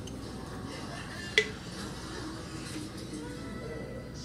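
A television playing at low level in the room, with one sharp clink that rings briefly about a second and a half in.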